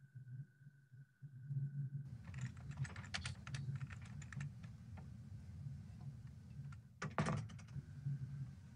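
Typing on a computer keyboard: scattered key clicks begin about two seconds in, and a quick, dense run of keystrokes follows near the end.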